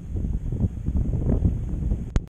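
Wind buffeting the camera's microphone: a low, uneven rumble that rises and falls with the gusts.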